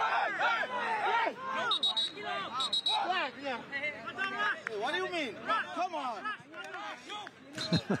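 Several players' voices shouting over one another on a soccer pitch, disputing whose throw-in it is.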